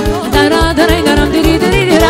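Romanian wedding band playing fast folk dance music (horă/sârbă) live: a quick, trilling melody lead over accordion and a steady bass-drum-and-cymbal beat of about four strokes a second.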